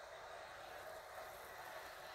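Faint, steady hiss with no distinct sounds in it.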